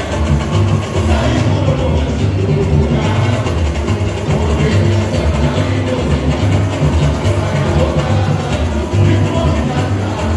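Live samba-enredo during a samba school parade: the bateria's drums keep a strong, steady low beat under sung melody, carried over the avenue's loudspeakers.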